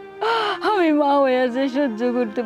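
A person's anguished wailing cry: a sharp gasping intake about a quarter-second in, then a drawn-out voiced wail that falls in pitch, over steady bowed-string background music.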